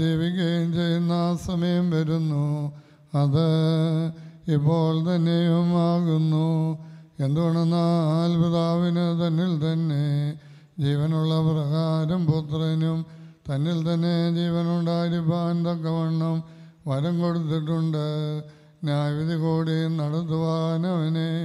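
A clergyman chanting a liturgical prayer through a microphone, held mostly on one low reciting tone with small rises and falls. It comes in about eight phrases, each a couple of seconds long, separated by brief breaths.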